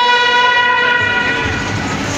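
Indian brass band's trumpets and saxophone holding one long steady note together, easing off near the end.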